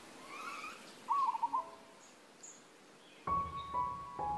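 Forest birds calling: a few faint chirps, then a short, louder wavering call of about five quick notes about a second in. Soft piano notes come in near the end.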